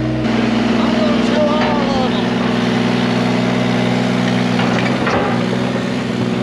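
Yanmar mini excavator's diesel engine running steadily at a constant speed.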